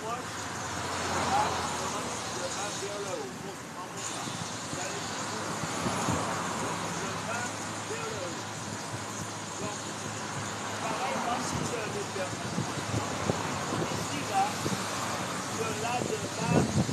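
A man's voice talking indistinctly, over steady outdoor background noise that swells and fades a few times.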